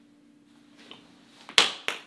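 Two sharp hand smacks about a quarter of a second apart, the first the louder, after a quiet pause.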